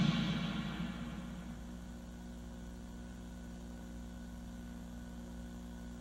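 The last orchestral chord fades out over the first second or so, leaving a steady low electrical hum with faint hiss from the television and tape playback.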